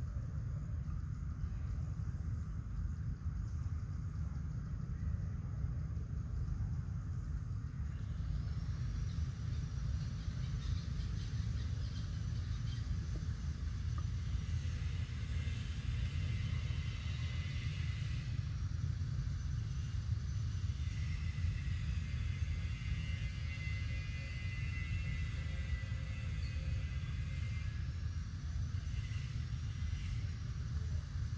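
Outdoor ambience: a steady low rumble. About eight seconds in, a high, wavering buzz joins it and swells and fades in slow waves.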